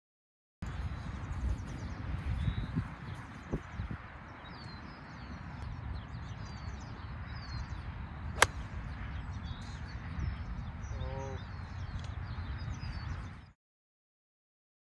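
A golf iron (a 9-iron) striking the ball: one sharp, loud click about eight seconds in. Under it, wind on the microphone and birds chirping throughout.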